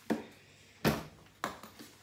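Three sharp knocks, close together over about a second and a half, from a wooden đàn nguyệt (moon lute) body being handled and bumped.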